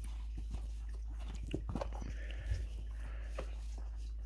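Soft handling noises from rubber Crocs clogs being moved and turned over by hand on a rug: a few scattered light clicks and rubs over a steady low hum.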